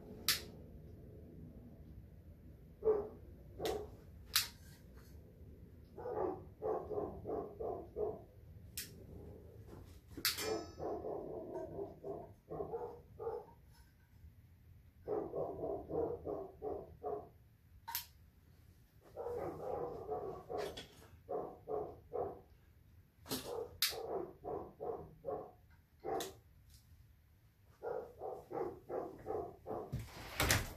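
Air pump of a vintage Sears single-mantle white-gas lantern being worked by hand, in repeated runs of four to six strokes at about four a second, pressurizing the fuel tank. Sharp single clicks fall between the runs.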